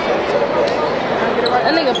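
Crowd chatter in a gymnasium, with a basketball bouncing on the hardwood court: a couple of sharp strikes stand out from the babble.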